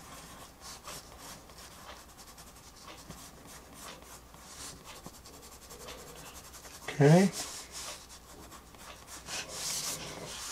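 Erasable coloured pencil shading on Bristol board: a faint, scratchy rubbing of the lead in quick repeated strokes. About seven seconds in, a short voiced sound rising in pitch from the artist cuts in, the loudest moment.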